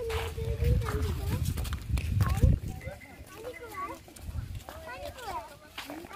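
Young children's high voices calling and chattering, with other voices around them. A low rumble runs under the first two and a half seconds.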